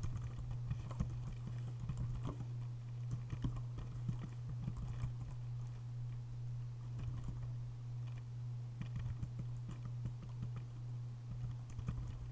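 Typing on a computer keyboard: irregular runs of keystrokes with short pauses, over a steady low hum.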